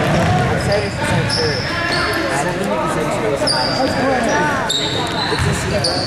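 Basketball being played on a hardwood gym floor: the ball bouncing, sneakers squeaking in short high chirps, and overlapping shouts from players and spectators in the echoing hall.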